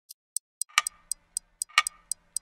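Clock ticking: quick, light, high ticks about four a second, with a louder tick that rings briefly once a second.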